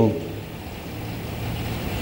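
A pause in a man's speech, filled by a steady low hum of background noise through the microphone; his previous word trails off right at the start.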